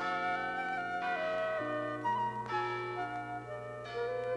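Instrumental background music: a woodwind melody of held notes over sustained chords.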